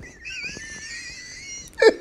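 A high-pitched, wheezing squeal of laughter held for over a second, wavering slightly, then a sudden loud burst of laughing voice near the end.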